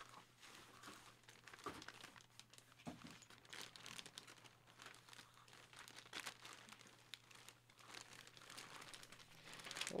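Faint, irregular crinkling of a clear plastic poly bag as hands rummage through it and shift the jersey packed inside.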